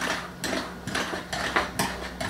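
A knife run around the rim of a fluted quiche tin, trimming off overhanging pastry: a series of short scrapes and clicks of the blade against the tin's edge.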